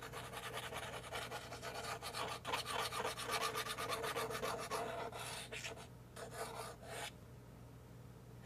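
Plastic nozzle of a white glue squeeze bottle scraping across cardboard as glue is drawn out in squiggly lines: a continuous scratchy rubbing that breaks into a few short strokes about five seconds in and stops about a second before the end.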